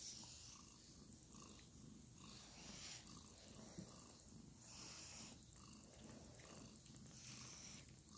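Very faint sound, close to silence: the low purring of a mother cat nursing her newborn kittens, with soft breathy rustles now and then.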